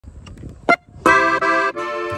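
Accordion opening a norteño corrido: a single short note, then from about a second in a run of full sustained chords that change every third of a second or so.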